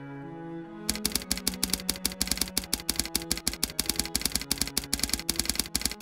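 Typewriter sound effect: a rapid run of key clicks, about eight a second, starting about a second in, one click per letter of a title typing onto the screen. Slow bowed-string music plays underneath.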